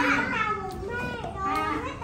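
Young children's high-pitched voices, several talking and calling out at once.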